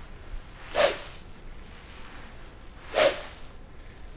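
Jetstick swing-speed training tool whooshing as it is swung hard in full golf swings: two short, sharp whooshes about two seconds apart. The whoosh marks the point where the swing is fastest.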